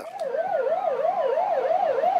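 Vehicle sirens sounding together. One gives a fast warble, rising and falling about four times a second. The other is a slower wail that sweeps down in pitch and then climbs back up.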